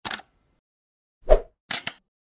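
Short pop and click sound effects of an animated logo: a brief click at the start, a louder pop with a low thud about a second and a quarter in, then a quick pair of clicks near the end.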